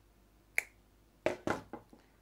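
Yellow-handled cutters snipping through clear plastic air hose, a single sharp snip about half a second in. A quick run of three or four clicks and knocks follows just after a second.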